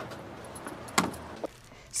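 A front door shutting with a single sharp click about a second in, over a steady background hiss of street noise.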